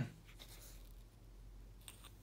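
Faint handling sounds: fingers rubbing on and turning a steel Omega wristwatch and its strap, with a light click near the end.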